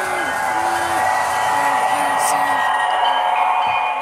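Model electric train running on its track: a steady rolling rattle of wheels on rail with a constant motor whir. Faint voices sound behind it.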